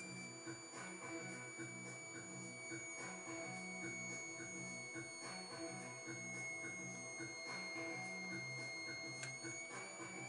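A faint, steady high-pitched whine that sinks slightly in pitch, from the self-oscillating ignition-coil back-EMF transformer circuit as it charges its capacitors. Quiet music with a regular low pulse runs under it, and a single click comes near the end as the charge is dumped into the bulb.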